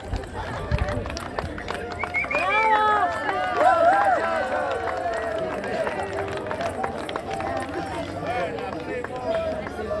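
Several high-pitched voices calling and singing together over crowd chatter, loudest from about two seconds in and easing after about five seconds.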